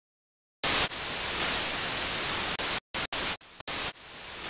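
Digital silence, then a little over half a second in, hissing static like an untuned television, cut by several abrupt dropouts near the end.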